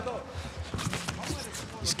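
Live MMA cage-fight sounds under a short gap in the commentary: a few scattered sharp knocks and slaps, like fighters' feet and gloves in the cage, over a hall's background noise.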